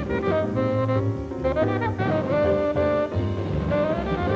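Tenor saxophone playing a melodic jazz line of short and held notes, with double bass underneath, in a live hard-bop band performance.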